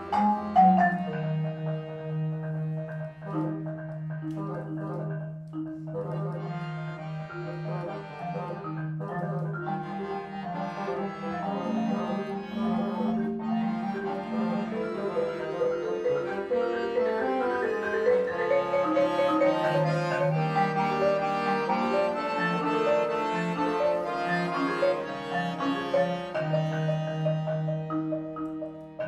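Live chamber trio of marimba, piano accordion and bassoon playing a contemporary piece: struck marimba notes over long held low notes, with a busy stretch of many notes in the second half.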